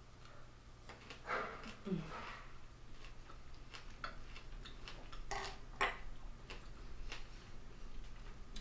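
Quiet eating sounds as a chocolate-covered strawberry is bitten off a fondue fork and chewed, with a short hum about a second and a half in. Two sharp clicks of cutlery about five and a half seconds in.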